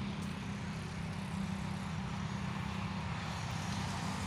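Steady background rumble of motor traffic, with a constant low hum over a wash of noise and no distinct events.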